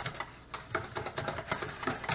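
A utensil stirring a runny egg-and-milk mixture in a stainless steel mixing bowl, clicking and scraping against the metal about four or five times a second in an uneven rhythm.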